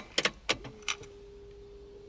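Ignition key jingling and clicking in the lock as it is turned to the on position: a few sharp clicks in the first half second. Then a faint steady tone comes on and holds.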